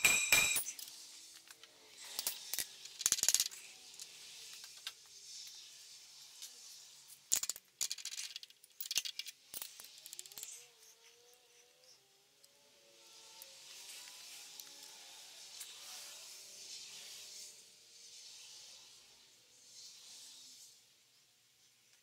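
Light metallic clinks and knocks, several in the first nine seconds, as a tap guide and small tap are set on a brass connecting rod. Then a faint, steady hiss with a few thin squeaks as a 2-56 tap is turned by hand into the brass.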